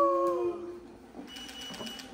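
The end of a long, drawn-out, high-pitched admiring "ooh" from a person's voice, held steady and then gliding down and fading out about half a second in.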